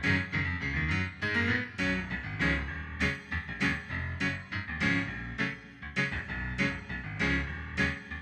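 Piano music, chords struck a few times a second over low bass notes.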